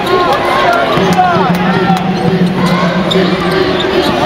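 Basketball being dribbled on a hardwood court, with sneakers squeaking as players cut and move, over the voices of the arena crowd.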